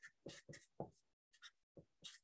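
Marker pen writing on brown paper: a few faint, short scratchy strokes.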